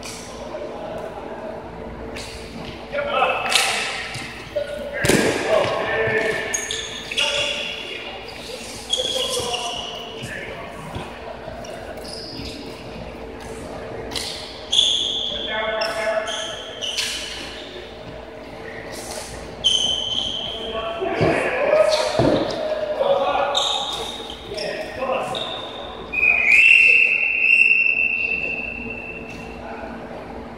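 Indoor floorball play in a large echoing gym hall: players calling and shouting, knocks of sticks and the plastic ball, and short high squeaks, with a longer high tone near the end.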